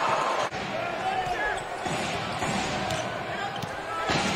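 Basketball game court sound: a ball bouncing on the hardwood floor and a few short sneaker squeaks over a steady hum of arena noise, with a brief drop about half a second in where the footage cuts.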